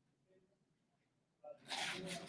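Quiet room tone, then about a second and a half in, sheets of paper rustling loudly as they are handled.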